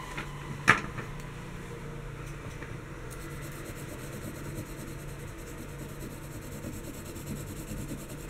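A single sharp click about a second in, then a quiet stretch of faint scratching from a graphite pencil shading on paper.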